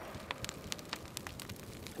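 Large bonfire of stacked green, resinous tree logs burning in the wind: a steady rush of flame with frequent sharp crackles and pops.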